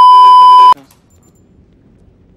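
A loud, steady 1 kHz test-tone beep, the tone that goes with TV colour bars. It cuts off abruptly under a second in, leaving faint low background noise.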